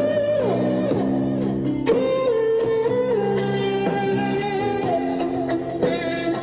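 Electric guitar rock music, with long held lead notes that bend and step from one pitch to the next.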